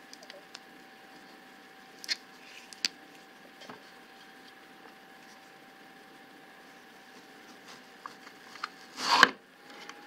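Quiet handling of a plastic Veggie Wedger over a faint steady hum: a few light clicks early on, then about nine seconds in one short crunching swish as its serrated stainless-steel blades are pushed down through a tomato, cutting it into wedges.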